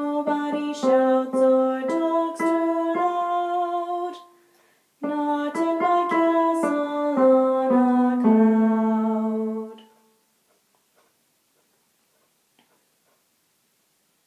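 A woman sings an alto harmony line with piano accompaniment in two short phrases of stepwise notes. The last note is held and fades out, followed by about four seconds of near silence.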